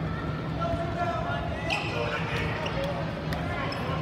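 Basketball bouncing on a hardwood gym floor as a player dribbles, a few separate knocks under the murmur of voices in the gym.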